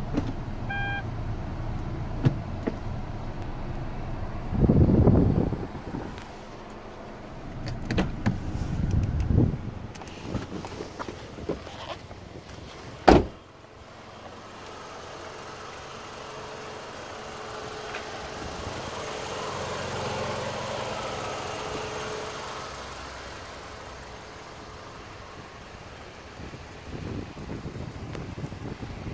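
Hyundai Avante (Elantra) running at idle with its hood open: a short electronic beep near the start, handling and rustling noise, then a single loud slam about 13 seconds in. After the slam a steady engine hum continues, swelling for a few seconds around 20 seconds in.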